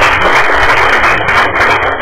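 Applause from a small group of people clapping.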